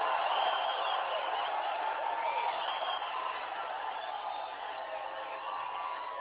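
Large rally crowd cheering and applauding in response to a question, loudest at the start and slowly dying down.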